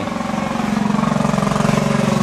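Riding lawn mower's small engine running steadily while mowing, a low even drone with a fast putter that grows slightly louder.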